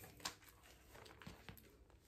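Near silence: quiet room tone with a few faint, short handling clicks as a tablet in a folio case is picked up, one about a quarter second in and another about a second and a half in.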